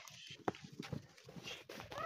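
Faint hoofsteps of a sheep flock moving on packed dirt: scattered soft clicks and shuffles, with one sharper click about half a second in.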